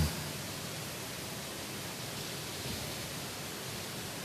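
Steady, even hiss of room tone and recording noise, with no other sound standing out.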